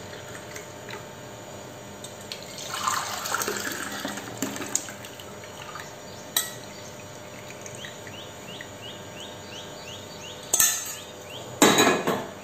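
Liquid poured from a stainless-steel pot, splashing for about two seconds, amid clinks of steel kitchen vessels being handled. Two louder metallic knocks come near the end.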